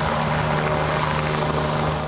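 Helicopter lifting off close by: its rotor and engine make a steady, loud whir with a constant low hum underneath.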